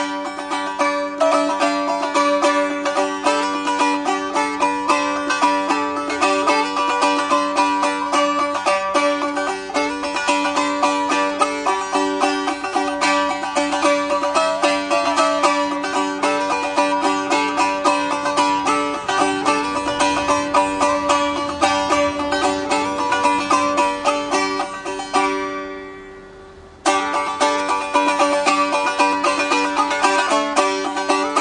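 A three-string stick dulcimer with a walnut body and a yew top is strummed in quick strokes. The two bass strings drone an open chord while the fretted treble string plays a melody. A little before the end the playing dies away, then starts again abruptly.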